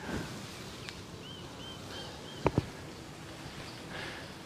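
Two quick thumps of handling noise on a handheld camera's microphone, about two and a half seconds in, as a hand is shaken to flick off an insect that landed on the thumb. Just before them, four short high chirps sound faintly over quiet outdoor background.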